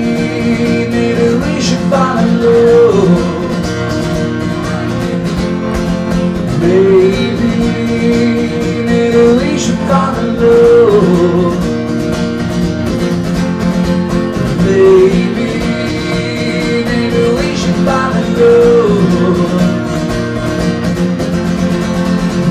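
Solo acoustic guitar strummed steadily under a man's singing voice, which sings the line "fall in love" near the end.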